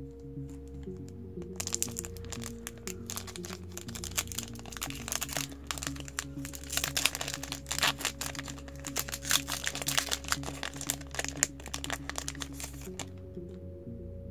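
Foil trading-card booster pack wrapper crinkling as it is handled and torn open by hand, starting about a second and a half in and stopping near the end.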